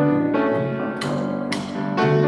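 Grand piano and double bass playing an instrumental piece together, the piano striking several chords in quick succession over a low bass line.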